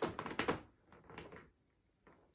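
Light clicks and knocks of toy cubes and small hands on a plastic high-chair tray, a quick series in the first second or so, then quiet.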